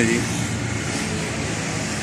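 Steady vehicle noise: a low engine hum under an even rush of road traffic.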